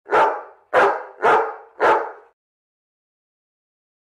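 A dog barking four times in quick succession, about two barks a second, then stopping.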